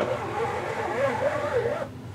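A strip of matting board, used as a squeegee, scraped up across an ink-flooded silk-screen mesh: one continuous rubbing scrape with a wavering squeak in it, lasting just under two seconds.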